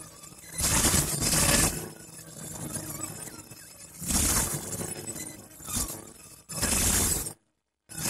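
Harsh electronic glitch noise: four loud hissing bursts, the first about a second long and the later ones shorter, over a quieter crackling texture. The sound cuts out abruptly to dead silence for about half a second near the end.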